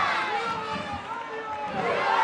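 Voices singing unaccompanied, with long, wavering held notes.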